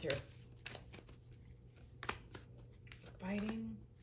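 Tarot cards being handled and laid down on a cloth-covered table: a few faint clicks and snaps of card stock, the sharpest about two seconds in. Near the end comes a short hummed 'mm' from the reader.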